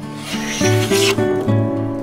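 A hand plane taking one shaving, about a second long, off the edge of a thin birch board, over soft acoustic guitar music.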